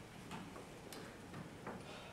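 Computer keyboard keys being typed, a few faint, irregularly spaced clicks.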